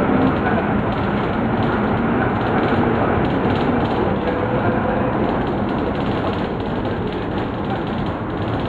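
Cabin noise inside a moving Volvo B9 Salf articulated bus: its diesel engine and road noise, a steady rumble that eases slightly over the stretch.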